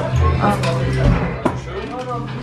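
Crunching of a bite into very crispy thin-crust pizza, with a couple of sharp crackles as the crust breaks, over background music.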